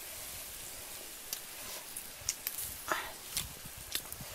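Squid sizzling on a hot flat rock over a wood fire: a steady hiss with a few scattered sharp crackles and pops.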